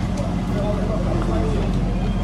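Background voices over a steady low rumble.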